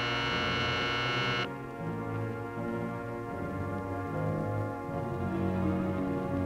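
A steady signal horn sounds at the start, a single flat tone rich in overtones, and cuts off suddenly after about a second and a half. Film-score music with sustained low notes carries on after it.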